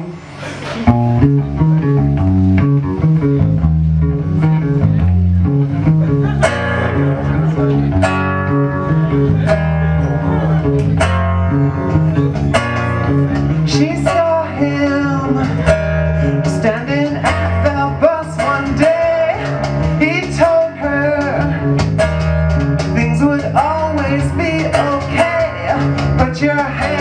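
Live rock band playing a song on electric guitars and drums, starting about a second in, with a woman singing lead over it after a few seconds.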